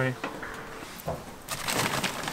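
Scraping and clicking from a round wire barbecue grill grate being cleaned by hand, fainter at first and louder and rougher in the last half-second.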